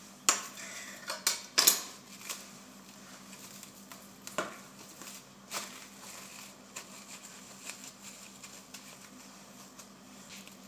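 Plastic cling film crinkling as it is wrapped around a ball of dough, with sharp clicks and knocks of hard objects against a granite countertop. The knocks are loudest in the first two seconds, with a few more near the middle.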